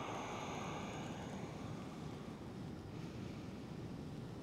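Quiet room tone with a low steady rumble; a soft breath fades out within the first second or so.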